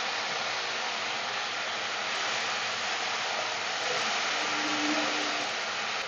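Onion and tomato masala sizzling steadily as it fries in hot oil in a kadai.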